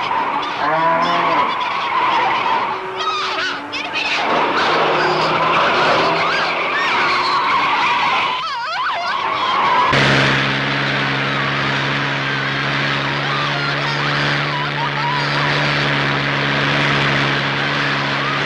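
Film-soundtrack car sounds: an engine running with wavering tyre squeals. About ten seconds in the sound changes abruptly to a steady, even engine drone.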